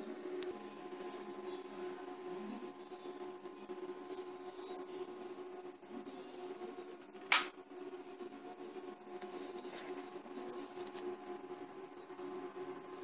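A single sharp click about seven seconds in, the light being switched on, over a faint steady hum. Three short, high, falling chirps come a few seconds apart.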